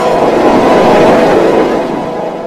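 Heavily distorted, pitch-shifted logo jingle processed with the 'G Major' effect: a dense, harsh chord that starts fading near the end.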